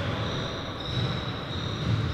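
Steady background noise of a large gym hall: a low rumble with a faint, thin high whine, no distinct knocks or strikes.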